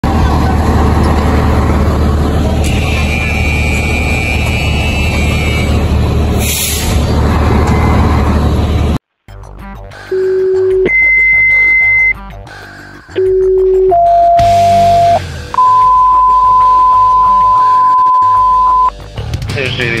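A loud steady rumble for about nine seconds, then a sudden cut to fire dispatch radio alert tones. Short steady beeps step low, high, low and middle, then one long tone is held for about three seconds: the tone-out that pages a fire company before the dispatcher gives the call.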